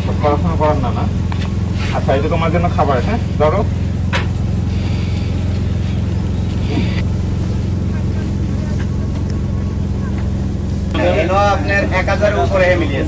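Engine of a moving motor vehicle running steadily, heard from inside its cab as a constant low hum.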